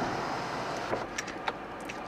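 Power sunroof motor of a 2012 Chevy Equinox running as the glass panel moves, a steady whir with a few light clicks, heard inside the cabin.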